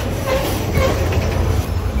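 Freight train of boxcars rolling past at close range: a steady, loud rumble of wheels on rail, with a few brief, faint squeals in the middle.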